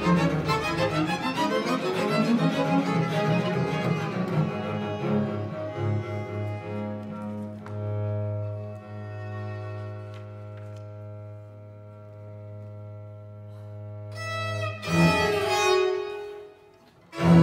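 Baroque string ensemble playing a contemporary piece: violins and a low bowed string in a dense, busy passage for the first few seconds, then a long held chord over a sustained low note that grows quieter, broken by a loud, sharp accented chord near the end.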